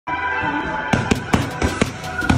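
Boxing gloves smacking into focus mitts: a quick flurry of about five sharp punches landing within a second, starting about a second in, with music playing underneath.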